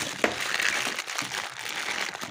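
Chopped straw rustling and crackling as it is handled in a plastic crate, a steady rustle with one sharper click near the start.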